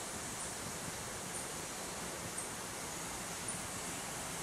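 Steady, even outdoor hiss of rainforest ambience with no distinct events. Faint high peeps sound about once a second.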